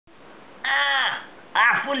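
A person's voice giving a harsh, drawn-out 'aaah' cry that falls in pitch at its end, followed about half a second later by the start of speech.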